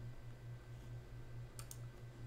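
Quiet room tone with a steady low hum, and a brief double click about a second and a half in.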